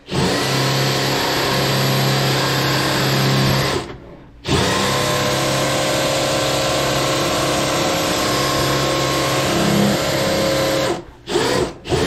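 Drill-driven RIDGID FlexShaft K9-102 drain-cleaning machine running, spinning its cable inside the drain pipe: a steady motor whine that stops briefly about four seconds in, starts again, and cuts off near the end.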